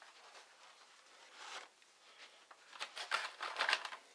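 Carded blister packages of toy cars being gathered up and handled: a brief rustle about a second and a half in, then a quick run of plastic-and-card clicks and scrapes near the end.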